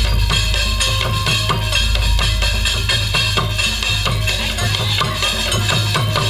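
Organ dangdut band music played loud through the PA: electronic keyboard over a steady deep bass and a quick, regular drum beat.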